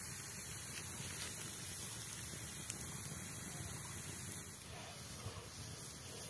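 Open wood fire burning under bamboo cooking tubes: a steady low hiss with a few faint crackles.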